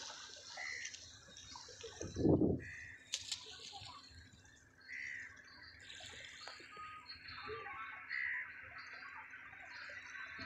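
Shallow water sloshing around a wader working a crossed-pole push net, with a louder splash-like rush about two seconds in as the net is brought down into the water. A bird gives four short calls.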